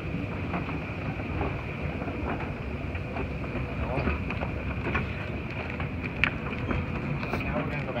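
Small Montgomery escalator running: a steady low rumble from the moving steps and drive, with a steady high whine over it. Light clicks from the steps come and go, with one sharper click about six seconds in.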